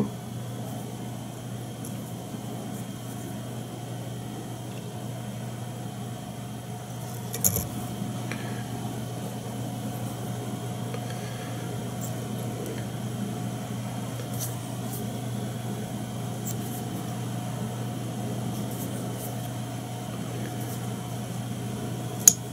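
Steady electrical hum of the room with a few faint small clicks from handling thread and feather at a fly-tying vise, one louder tap about seven and a half seconds in.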